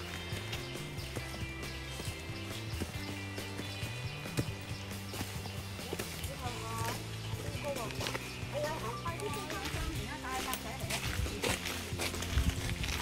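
Background music with sustained low tones over hikers' footsteps and trekking-pole taps on stone steps, with faint voices in the second half.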